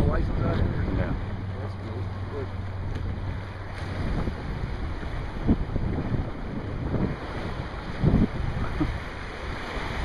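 Wind buffeting the microphone over the wash of waves surging through kelp against the pier, with a low steady hum for the first few seconds and a couple of brief low bumps later on.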